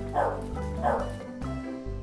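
Corgi puppy barking twice, two short barks under a second apart, over background acoustic guitar music.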